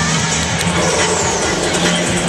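Arena crowd cheering and shouting, a dense steady noise over loud music from the PA.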